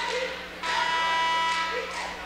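Basketball arena horn from the scorer's table sounding once for about a second, a steady buzz, signalling a substitution during a stoppage in play.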